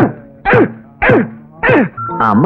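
Short wailing cries from a person's voice, each sliding sharply down in pitch, four in quick succession about half a second apart.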